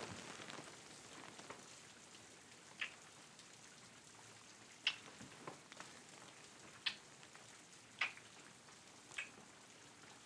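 Faint steady rain sound with five short, soft smacking pops spaced one to two seconds apart: close-up kisses into the microphone.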